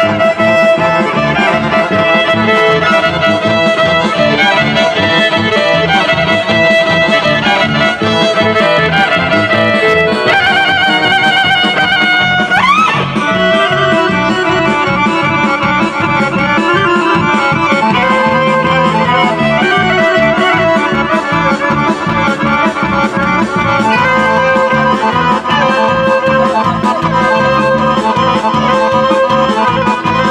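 Kolo folk dance music led by accordion, playing steadily with a driving rhythm. About twelve seconds in, a single quick rising swoop in pitch sounds over the music.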